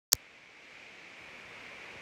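A single sharp click at the very start, then a steady hiss of background room noise.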